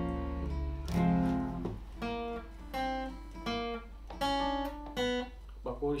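Steel-string acoustic guitar: a couple of strummed chords, then single notes picked one at a time, a melody being picked out note by note.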